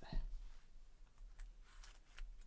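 A few faint, sharp clicks and taps as small card pieces and a plastic glue bottle are handled and set down on a tabletop.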